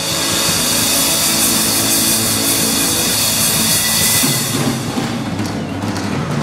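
Live band playing a loud rock number on drum kit, acoustic guitars, fiddle and bass, with a constant wash of cymbals that eases a little near the end.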